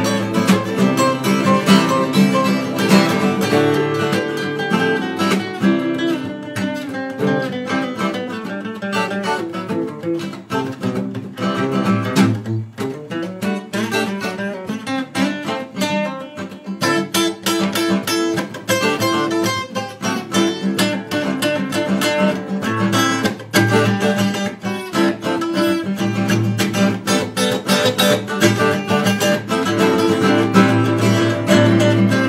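Two acoustic guitars playing an instrumental passage without vocals: a strummed rhythm part under picked lead lines.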